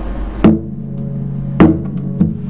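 Acoustic guitar struck twice by hand, about a second apart. Each sharp hit sets the strings ringing on.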